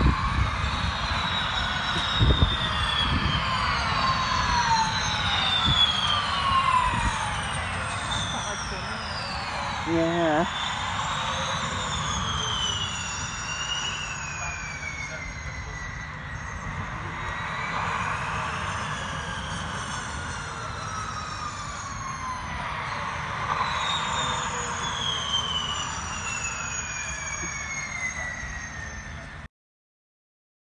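Gen2 Formula E cars passing one after another, each electric drivetrain giving a high whine that slides down in pitch as the car goes by, with several cars overlapping. A thump about two seconds in, and the sound cuts off just before the end.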